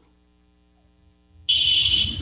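A faint low hum in near silence for about a second and a half, then a sudden high buzzing tone with hiss cuts in near the end, on the audio of the app's practice call just before the other caller answers.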